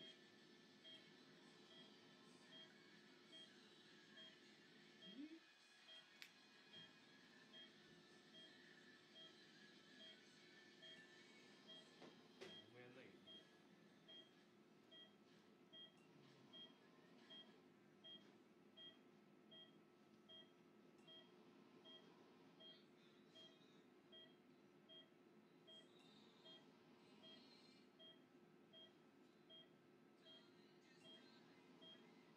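Faint, steady beeping of an operating-room patient monitor, one short beep less than a second apart in an even rhythm, over a low room hum.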